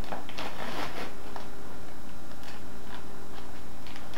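Paper rustling and light clicks as a hot bag of microwave popcorn is handled and opened, mostly in the first second, with scattered ticks after. A steady low electrical hum runs underneath.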